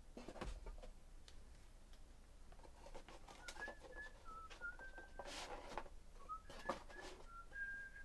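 A person whistling a tune in short, steady notes that step up and down, starting about three and a half seconds in, over scattered rustles and clicks of card packs and cards being handled.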